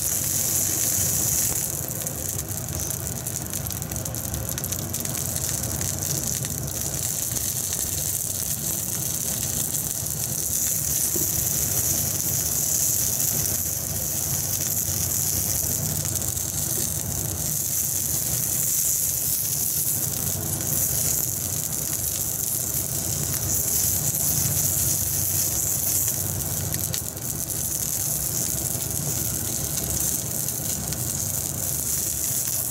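Octopus-cut red wiener sausages sizzling in oil in a nonstick frying pan on a gas stove: a steady frying hiss, with a steady low hum underneath.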